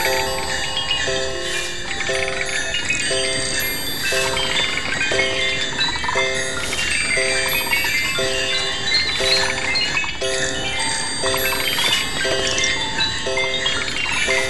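Lo-fi, live-mixed Christmas sound collage: a short looped chord repeats about twice a second under high, tinkling, bell-like tones.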